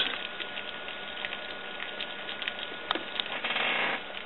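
Pot of water coming to the boil over a carbon-felt-wick alcohol stove: a steady hiss full of small crackles and pops, with a sharper click just before 3 seconds in and a slightly louder stretch after it.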